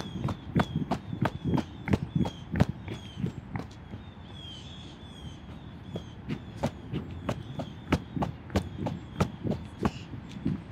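Footsteps on a paved path, about two steps a second, with a short lull midway. A bird chirps over them again and again in short falling notes.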